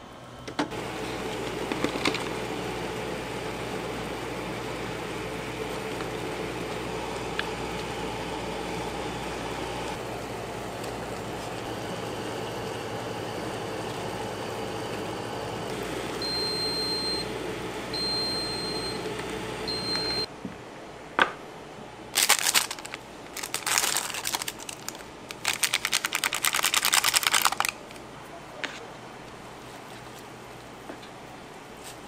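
Instant ramen boiling in a paper bowl on an induction cooker: a steady bubbling hiss with a hum. After about sixteen seconds there are three short, high beeps. After a cut, noodles are slurped loudly in several bursts.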